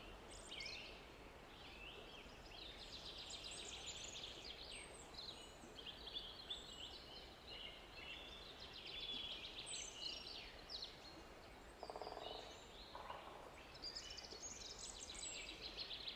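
Faint birdsong: small birds chirping and trilling in quick, high notes throughout, with a brief lower sound about twelve seconds in.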